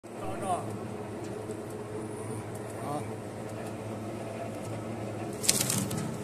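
Twin-shaft metal shredder running with a steady motor and gearbox hum. Near the end, loud sharp cracking and crunching as its toothed cutters bite into an aluminium strip.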